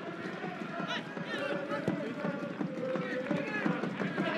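Football match sound from the pitch: voices shouting over a steady background of field noise, with one sharp knock about two seconds in.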